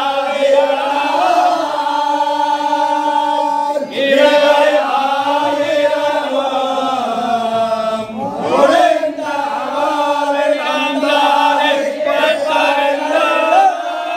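A group of men chanting a hymn together in unison, holding long drawn-out notes, with short breaks for breath about four and eight seconds in.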